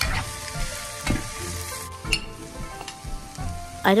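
Shredded cabbage, leeks and onion sizzling in a non-stick frying pan while being stir-fried with a spatula, with a scrape of the spatula against the pan about once a second. The sizzle thins out about two seconds in.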